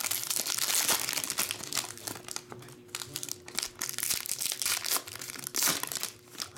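Foil trading-card pack wrapper crinkling as it is torn open and handled, in irregular crackles.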